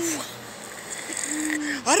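A woman's voice speaking Spanish: a word trails off at the start, a short held hum follows about halfway through, and speech starts again at the end.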